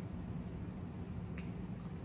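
Faint chewing of a mouthful of sandwich over a low, steady hum, with a single faint click about one and a half seconds in.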